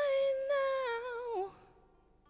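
A woman's voice holding one long sung note, steady in pitch, then sliding down and dying away about a second and a half in.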